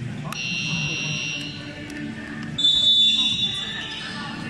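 A referee's whistle on a basketball court: a shrill blast shortly after the start, then a louder, longer one about two and a half seconds in, over crowd chatter.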